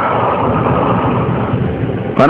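A loud, steady noise with no voice in it, heaviest in the middle pitches, easing off near the end.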